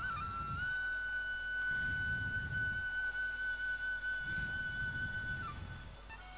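A single flute note held steadily for about five seconds, stepping up in pitch at the start and falling away near the end, played softly as background music.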